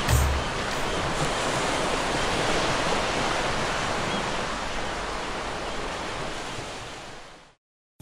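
Ocean surf breaking on a beach, a steady rushing wash that fades out near the end.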